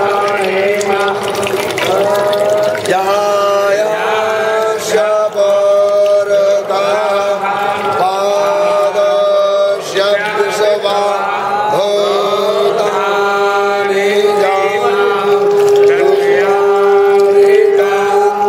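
Mantras chanted aloud, the voices rising and falling in short phrases over a steady, unbroken held tone.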